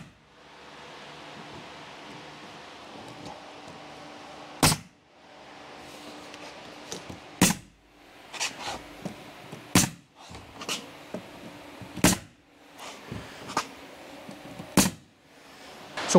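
Bostitch pneumatic coil siding nailer driving 2.5-inch ring-shank nails into plywood paneling: five sharp shots about two to three seconds apart, the first about five seconds in, with fainter clicks between them. The air pressure is set a little high so each nail is overdriven just below the surface.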